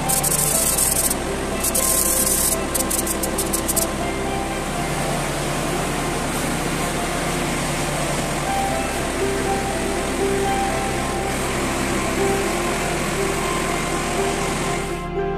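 Aerosol spray can hissing in two long bursts and then a run of short sputtering puffs, stopping about four seconds in. Background music with sustained tones and changing bass notes plays throughout.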